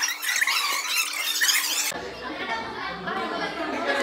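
High-pitched excited squealing voices of young women, full of quick upward and downward glides. The sound cuts abruptly about two seconds in to ordinary overlapping chatter in a classroom.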